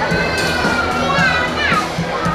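A high-pitched voice shouting from the sideline, held about a second and a half, then falling in pitch near the end, over crowd noise and background music.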